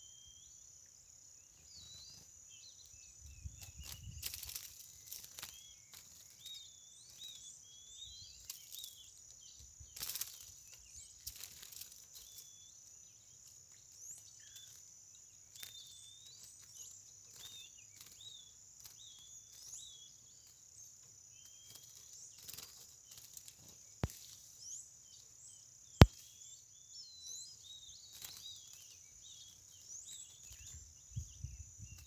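Steady high-pitched drone of insects with short bird chirps and calls scattered over it. A sharp click near the end is the loudest sound, with a fainter one two seconds before it.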